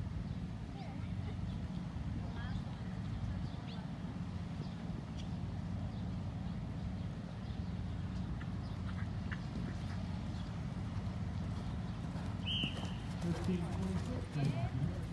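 Outdoor horse-show arena ambience: a steady low rumble with faint distant voices, and a short high squeak about twelve and a half seconds in. Near the end the hoofbeats of a cantering horse come close.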